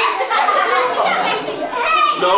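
A group of young children talking and calling out over one another in excited chatter.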